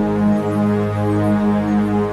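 Meditation music drone tuned to 207.36 Hz (G-sharp): a steady stack of held tones, strongest in the low register, swelling gently with no clear beat.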